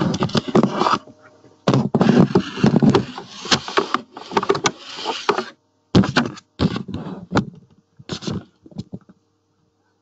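Handling noise with clatter and sharp clicks as network cables are unplugged and plugged back in, heaviest in the first five seconds and stopping about nine seconds in.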